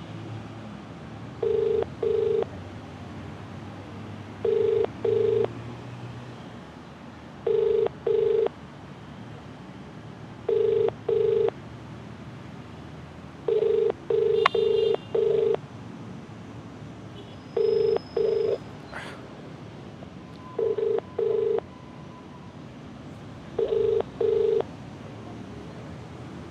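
Mobile phone ringback tone on speaker: a double ring repeating about every three seconds while the call rings out unanswered.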